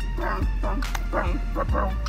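Short, pitched dog yips and barks, about two or three a second, over music with a deep, sustained bass.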